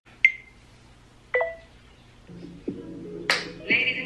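Sound effects from an animated intro: a sharp click with a short high ping, then a second click-and-ping about a second later. Soft music with a light beat comes in after the middle, with one sharp click near the end.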